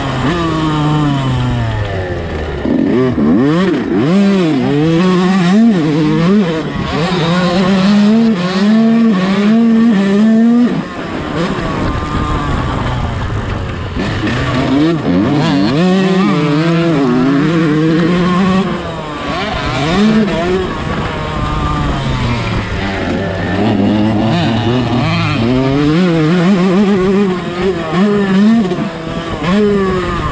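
A 125cc motocross bike's engine heard close up on board, revving up and falling off again and again as the rider works the throttle and shifts around the track.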